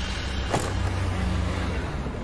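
A steady low rumble from the advert's soundtrack, with one faint click about half a second in.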